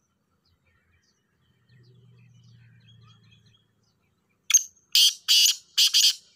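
Male black francolin calling: a quick run of loud, harsh notes beginning about four and a half seconds in. Before it there are only faint distant chirps and a weak low drone.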